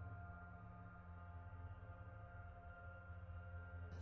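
Faint ambient background music: a low drone of several steady held tones.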